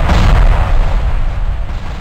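Cinematic boom sound effect: a loud deep rumble with a crackling, noisy top that fades steadily after its hit.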